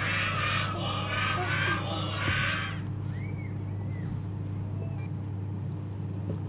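A short, thin, telephone-like recording of small children's voices for about the first three seconds, over a steady low electrical hum.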